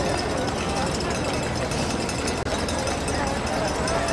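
Footsteps of a large pack of marathon runners on asphalt, a steady mass of footfalls, with indistinct voices from runners and spectators mixed in.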